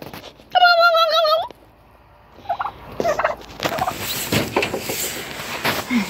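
A person's warbling, high-pitched imitation of a turkey gobble, held for about a second, made to coax the turkeys into gobbling. It is followed by low rustling and a few short soft chirps.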